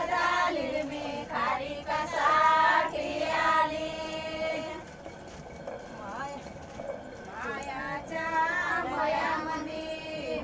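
A group of women singing an ovi, a Marathi folk grinding song sung at the stone hand mill, with long held notes. The singing drops quieter about halfway through and picks up again near the end.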